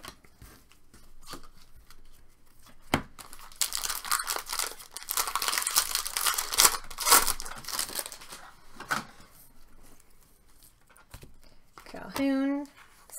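Foil wrapper of a baseball card pack torn open and crinkled by hand: a dense crackling tear lasting about four seconds in the middle, loudest just past halfway, with a few light taps of handled cards before it.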